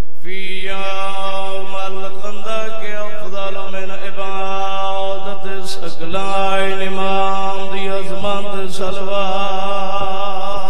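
A man's voice chanting a majlis mourning recitation into a microphone in long, drawn-out notes. One held note lasts about five seconds, then after a brief break a second long note wavers in pitch.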